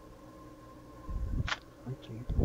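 Faint steady electrical whine from the recording setup, then a short low thump and a sharp mouse click about a second and a half in, advancing the presentation to the next slide.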